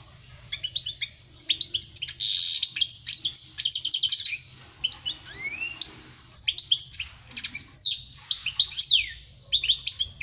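European goldfinch song: a fast, tinkling twitter of quick notes, trills and slurs, with a buzzy note early on and a long rising slur about halfway, broken by short pauses.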